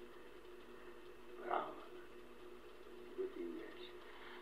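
Hiss and steady hum of a 1948 magnetic wire recording. Two brief faint sounds from the room come through it, one about a second and a half in and one past the three-second mark; the second is a short murmur of a voice.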